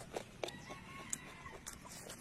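A chicken calling once in the background, a drawn-out call lasting about a second from about half a second in. Sharp clicks and smacks of eating occur close by.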